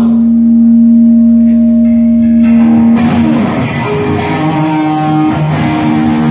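Amplified electric guitar holding one long sustained note, then from about halfway through playing a run of changing notes as a heavy metal song opens live.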